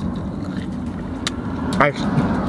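Steady low hum of a car idling, heard from inside the cabin, with a few faint crunches of chewing a tough fried chicken gizzard.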